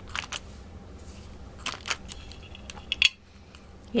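Light rustling and small clicks of hands handling paper, an inked rubber band and a plastic ink pad during rubber-band stamping, with a sharper click about three seconds in.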